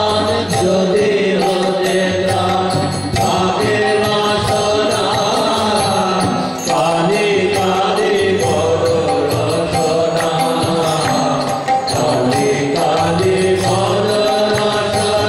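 A Kali kirtan, a devotional hymn, sung by a lead voice with a group of monks, accompanied by harmonium and violin.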